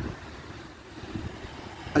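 Low, steady outdoor background rumble in a short pause between spoken words.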